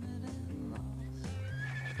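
Background music with held notes stepping in pitch, and a horse neighing over it.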